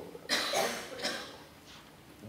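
A person coughing: a sharp cough about a quarter second in, then a fainter second cough about a second in.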